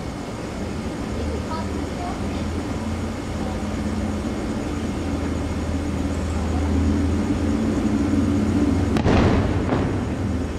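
Fireworks display: a low rumble builds, then a sharp, loud firework burst about nine seconds in trails off in an echo.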